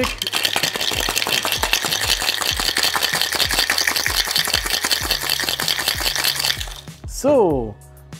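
Ice rattling fast and hard inside a metal cocktail shaker, a short vigorous shake that stops about seven seconds in, over music with a steady beat. Near the end a pitched sound swoops downward.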